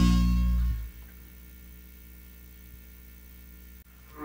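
A guitar-heavy rock track's last chord dies away within the first second, leaving a faint steady low electrical hum for about three seconds. A short click comes near the end.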